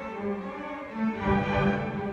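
A string orchestra of violins, cellos and double basses playing sustained notes, swelling louder with the low strings about a second in.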